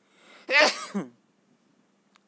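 A man's single loud, explosive cough, about half a second long, after a short rising breath in.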